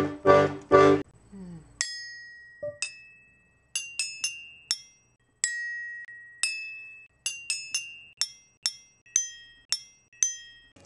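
An accordion playing chords, cutting off about a second in; then a children's toy instrument sounding single high, bell-like ringing notes, about fifteen in an uneven run with short gaps.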